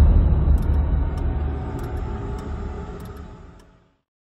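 Cinematic intro sound effect: the deep rumbling tail of a boom that hit just before, slowly dying away to silence, with a soft tick about every half second.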